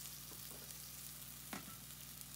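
Chopped butterbur buds (fukinotou) frying in a wok, a low, steady sizzle, with one faint click about one and a half seconds in.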